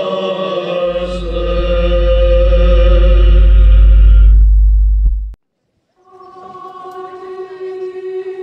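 Orthodox church chant sung by a choir over a deep low rumble, cutting off abruptly about five seconds in. After a moment of silence, chant starts again on one steadily held note.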